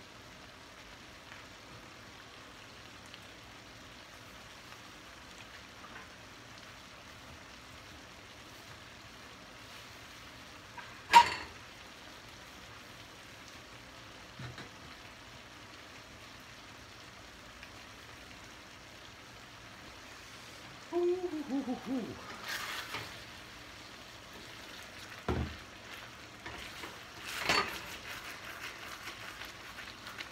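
Penne and sausage frying in a stainless-steel skillet on a gas burner: a faint, steady sizzle, the gravy nearly cooked down. A single sharp click sounds about a third of the way in, and a short falling pitched sound a little after two-thirds. Near the end come a thump and a few knocks and clicks as a wooden spatula starts stirring the pan.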